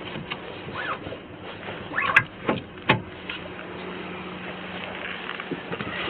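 Knocks, clicks and rustling of someone climbing into a car's driver seat, with a few sharp clicks about two to three seconds in, over a steady low hum from the car.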